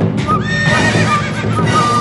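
Background music with a horse-like whinny over it. The whinny is a wavering high call that starts about half a second in and lasts over a second.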